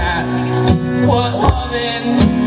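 Acoustic guitar and banjo playing together live, strummed and picked, with a strong stroke about every three quarters of a second.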